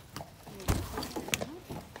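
The metal latch of a horse trailer's side door being worked and the door opened: a few sharp clicks, with a heavy clunk about a third of the way in and another sharp click a little past halfway.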